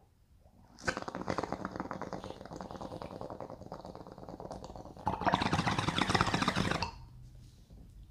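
Water in a glass bong bubbling as smoke is drawn through it: a rapid fine gurgle for about four seconds, then a louder, airier rush for about two seconds as the bowl is pulled and the chamber cleared.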